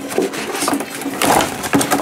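Clear plastic toy packaging crackling and rustling in a run of quick, irregular crackles as the boxes are pulled open by hand.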